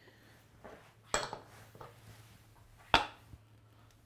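Stainless steel stand-mixer bowl being handled, with two sharp metallic knocks, one about a second in and one near three seconds, and a few faint taps between them.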